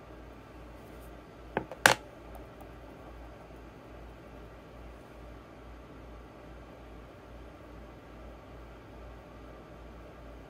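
Quiet room tone with a faint steady low hum, broken about one and a half seconds in by two sharp clicks a fraction of a second apart.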